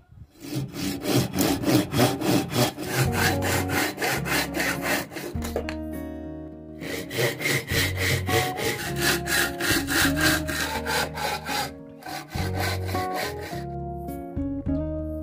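Hand saw cutting through a bamboo tube held in a vise, quick back-and-forth strokes at about four a second in three runs, pausing briefly near six and twelve seconds in. Soft background guitar music runs underneath.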